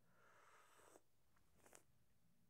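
Near silence, with a faint airy sip of hot coffee from a cup in the first second, and a couple of faint clicks near the end.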